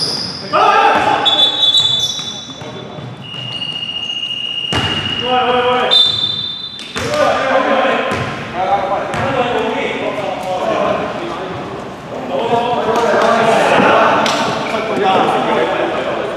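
Basketball thudding on a hardwood gym floor during a game, with brief high squeaks, one held for over a second, and players' voices calling out across the hall from about halfway through.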